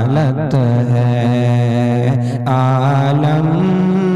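A male voice singing an Urdu naat, drawing out the opening line in long held notes. The notes waver with an ornament near the start, break briefly about two seconds in, and step up in pitch near the end.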